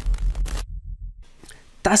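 Tail of a logo intro sting: a pulsing low bass with a crackling, glitchy digital noise burst as the logo breaks up. The bass fades out about a second in, and a man's voice begins just before the end.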